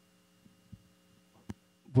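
Faint steady electrical hum from the sound system, with a sharp click about a second and a half in; a man's voice starts loudly into a microphone at the very end.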